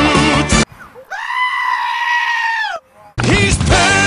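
The theme music cuts out, and a single long goat scream follows, held on one steady pitch for nearly two seconds, rising at the start and dropping off at the end. The music comes back in about three seconds in.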